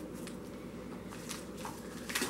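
Faint rustling and crinkling of small plastic kit packets being handled, with a few brief soft crinkles in the second half.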